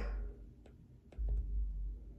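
Handling noise of a phone being moved while filming: a few faint clicks, then a low rumble in the second half.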